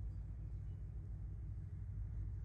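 A low, steady rumble with no distinct events.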